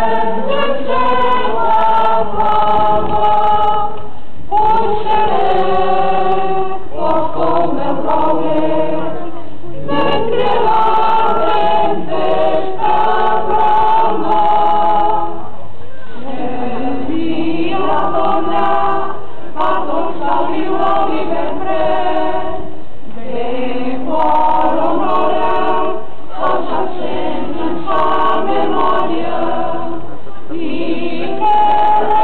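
A choir singing a town anthem in Catalan, in long held phrases with brief pauses between them.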